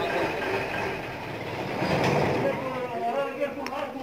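Steady running of the engine-driven air compressor on a borewell flushing rig, a constant machine noise, with men's voices coming in faintly over it near the end.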